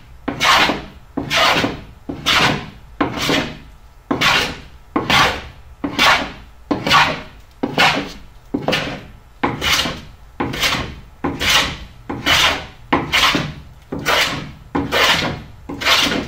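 Hand plane taking shavings off the strip planking of a wooden boat hull in a steady rhythm of about twenty short strokes, a little more than one a second. It is fairing the planks down toward final depth.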